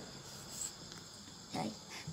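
Faint, steady high-pitched trilling of insects, crickets, running under a pause in the talk.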